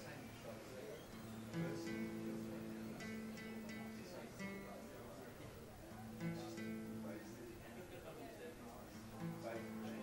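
Acoustic guitar strummed in a repeating chord pattern, each strum followed by ringing chords, played as an instrumental passage between sung lines.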